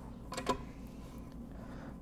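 A few light clicks from a steel bar clamp's screw being turned as the clamp is tightened, about half a second in, then quiet room tone.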